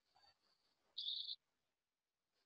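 Near silence, broken once about a second in by a short, faint high-pitched chirp.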